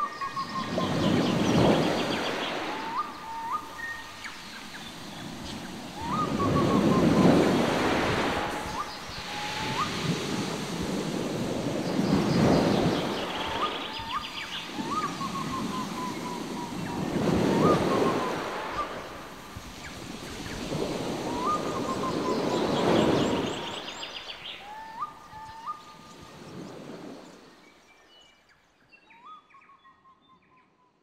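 Waves breaking on a shore in slow swells about every five seconds, with a bird repeating a short call over them; the sound fades away near the end.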